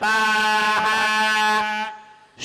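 Vedic hymn chanting: a single syllable held on one steady pitch for nearly two seconds, then fading out.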